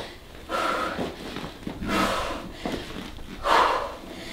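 A woman breathing hard from exertion: three forceful exhales about a second and a half apart, in rhythm with her sandbag swings.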